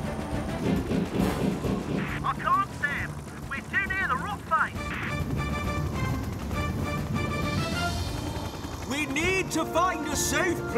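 Dramatic cartoon background music with held notes and gliding pitches, over the low steady rumble of a hovering rescue helicopter.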